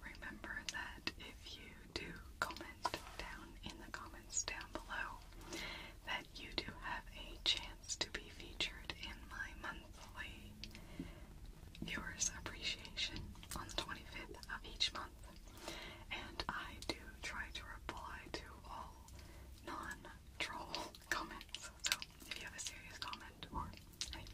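A woman whispering close to the microphone, soft whispered speech broken by short pauses, with small clicks.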